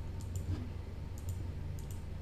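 Soft computer mouse clicks, a few of them in quick pairs, over a steady low hum.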